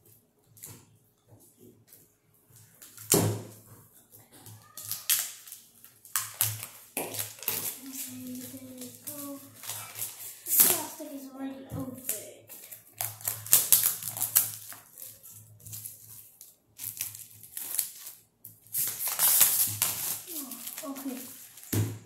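Thin plastic packaging crinkling and rustling in irregular bursts as it is cut and pulled off a stack of paperback books.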